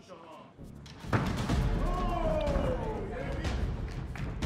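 A side kick landing with a sudden thud about a second in, followed by loud crowd noise with a falling 'ooh'.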